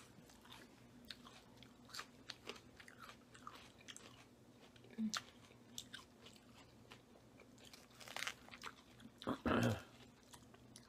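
Close-miked chewing of Caesar salad, romaine lettuce and croutons, heard as a scatter of small crisp crunches and mouth clicks, with a louder burst of sound near the end.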